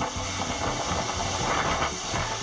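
Rushing water of Gullfoss waterfall: a steady, even rushing noise.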